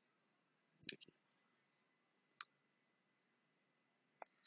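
Computer mouse clicks in near silence: a pair about a second in, then a single click about halfway through.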